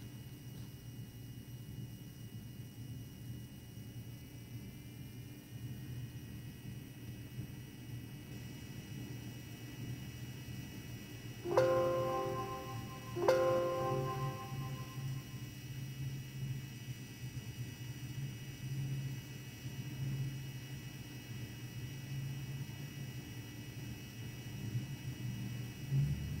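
Steady low hum, and about halfway through two ringing chime notes about a second and a half apart, each dying away within a second or two.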